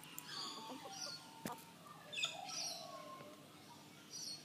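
Birds chirping and singing, faint, in short calls and gliding notes, with a single sharp click about one and a half seconds in.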